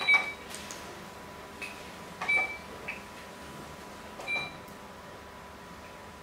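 Three short, sharp clicks at a Go board about two seconds apart, each with a brief high ring; the first and loudest comes as the digital game clock is pressed. A faint steady high tone runs underneath.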